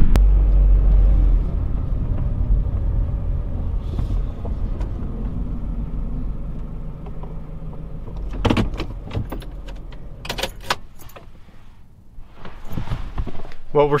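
Low, steady engine and road rumble inside a Honda car's cabin, fading away as the car slows and pulls up. About eight and a half seconds in come a few sharp clicks and rattles, then it falls quiet.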